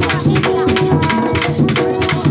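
Afro-Venezuelan San Juan drumming: a hand drum slapped and a long drum beaten with sticks in a fast, dense rhythm, with a metal can struck alongside and voices singing over it.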